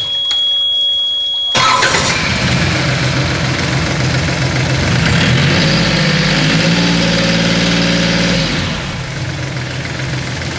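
Yanmar D36 diesel outboard: the engine sound drops out for about a second and a half, then the engine runs at idle. A little over five seconds in it is revved up for about three seconds, then drops back to idle.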